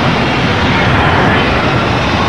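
Cartoon sound effect of a large machine running: a loud, steady, dense mechanical noise.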